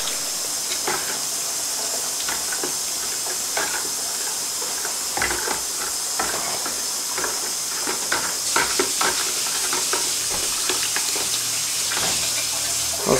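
A hand stirring a bucket of army worms, sugar and warm water: steady wet sloshing and swishing with scattered short clicks, mixing in the sugar settled on the bottom.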